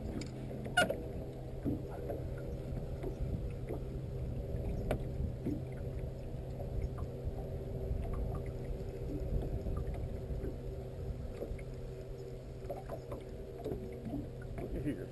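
Steady low motor hum on a fishing boat, under a rumble of wind and water, with a few faint clicks from a spinning reel being cranked.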